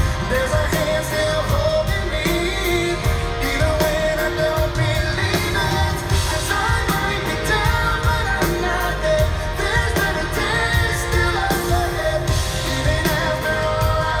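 Live Christian pop band: a male lead singer singing over drums and keyboards, picked up from among the audience.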